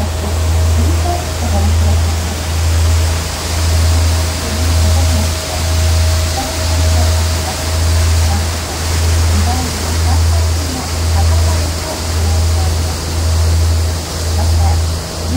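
Sightseeing boat's engine running under way: a deep drone that swells and fades about once a second, over a steady rush of water and wind. A faint voice is heard in the background.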